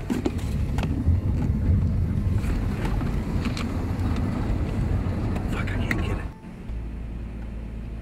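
Car driving, heard from inside the cabin: a dense low engine and road rumble with a few sharp knocks, cut off abruptly about six seconds in, after which a quieter steady low hum carries on.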